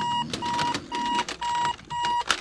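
Digital alarm clock going off: a steady electronic beep repeating about twice a second, with scattered clicks and rustles underneath.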